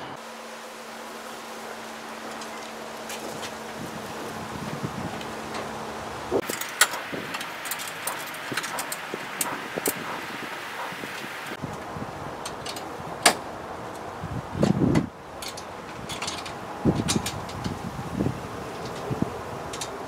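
Scattered light clicks and taps of small metal hardware being handled at a car's front grille, over a steady background hum.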